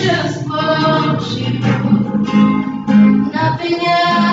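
Acoustic guitar strummed as accompaniment to women's voices singing a slow song together.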